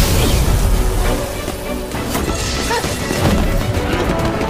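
Animated-fight sound effects over background music: a heavy rumbling clash of energy attacks, easing off in the middle, then sharp crashing and whacking strikes.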